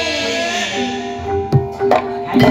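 Live gamelan music accompanying an ebeg (kuda kepang) dance: ringing metallophone notes are held and overlap, and two sharp percussive strikes come a little past the middle.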